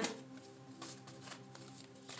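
Soft background music with steady held tones, and a few faint light rustles and flicks of a tarot deck being shuffled.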